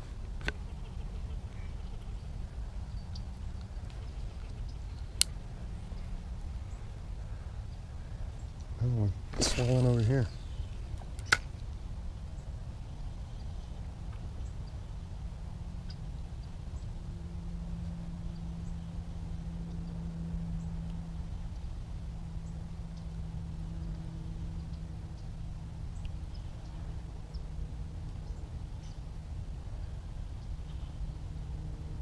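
Low steady rumble of wind and handling noise on the microphone, with a brief vocal sound about nine seconds in and two sharp clicks. A faint steady hum sets in about halfway through.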